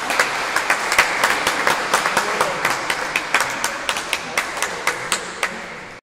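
A small crowd applauding, many hands clapping at once, the clapping thinning out toward the end.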